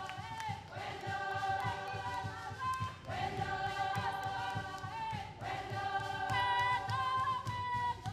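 Background music: a choir of voices singing long held notes in phrases of a couple of seconds each, over a low pulsing beat.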